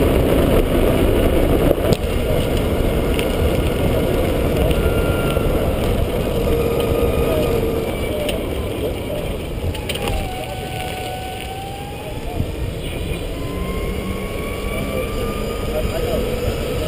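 EZ-GO RXV golf cart driving along a paved path, heard from low on its side: steady rumbling road and wind noise, with a faint whine that dips about ten seconds in and then slowly rises toward the end.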